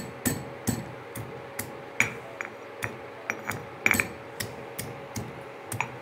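Stone pestle pounding garlic cloves in a black stone mortar: a run of sharp, uneven knocks, about three a second, some harder than others.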